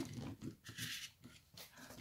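Faint handling noise from the RC paraglider model's frame being held and moved: a few light knocks and rustles, with a short hiss about a second in.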